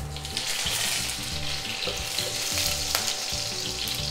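Fresh curry leaves sizzling in hot oil with mustard seeds in a nonstick kadhai, the sizzle picking up just after the start as the leaves hit the oil, with a wooden spatula stirring and a single click about three seconds in.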